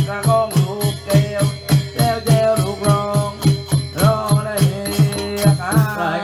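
Southern Thai Nora ritual ensemble music: drums beat a fast, even rhythm of about four strokes a second under a wavering, gliding melody, with small cymbals ringing on the beat.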